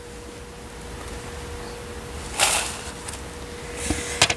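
A round wooden tray is set down onto a turntable: a short scraping rustle about two and a half seconds in, then a small click near the end, over a faint steady hum.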